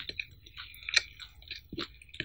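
Close-miked chewing of a mouthful of cheese pizza with the mouth closed: irregular small clicks and smacks, the sharpest about halfway through.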